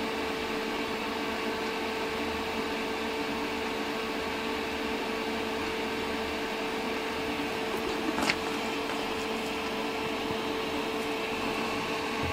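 Steady drone of an electric fan running, with a constant hum tone under it. There is a brief tap about eight seconds in.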